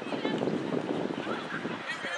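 Indistinct voices of players and spectators calling across an outdoor soccer field.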